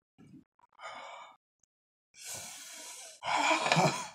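A man breathing hard through his mouth against the burn of very spicy chicken wings: short breaths, a long hissing exhale, then a louder voiced sigh near the end.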